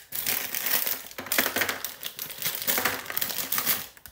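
Plastic sweet packet of Swizzels Drumstick Squashies crinkling continuously as it is handled and tipped to pour the sweets out.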